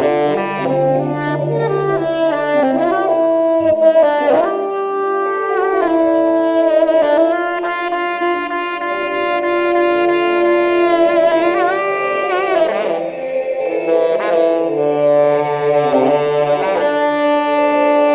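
Space-rock music with a saxophone playing a slow lead line of bending, gliding notes, holding one long note in the middle. Beneath it runs a low steady drone that drops out after about three seconds and comes back near the end.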